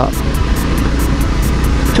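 Honda CBR250R's 250 cc single-cylinder engine running steadily while the bike climbs a hill. Background music with a quick, even ticking beat plays over it.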